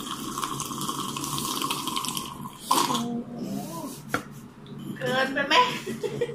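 A person slurping the pudding and its liquid straight from a plastic cup for about two and a half seconds, a wet sucking sound. A short vocal hum follows, then a few spoken words near the end.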